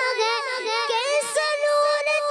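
A boy singing a naat, an Islamic devotional song, solo into a microphone, his high voice held on long wavering notes that slide between pitches.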